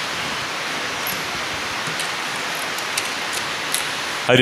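Steady, even hiss of electronic noise from the audio feed, with a few faint high ticks over it.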